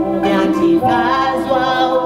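Gospel singing by a woman and a man together, long held notes in close harmony that slide to a new note about a second in.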